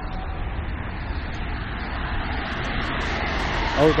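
Road traffic on a multi-lane road: steady tyre and engine noise of passing cars, swelling gradually toward the end as a car comes by.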